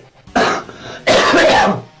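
A man coughing and clearing his throat twice: a short burst, then a longer one about a second in.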